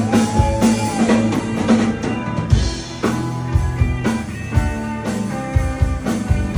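Live rock band playing: electric guitars over a drum kit and bass with a steady beat. A held note bends up and back down in the first second.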